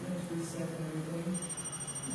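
Indistinct voices, then about halfway through a high-pitched steady electronic tone that lasts about a second.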